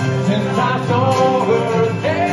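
Live acoustic music: two acoustic guitars strummed with a man singing the melody through a PA.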